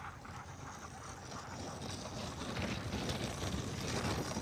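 A sled dog team and its loaded sled running over packed snow, with wind on the microphone. It makes a rushing, scuffing noise that grows steadily louder.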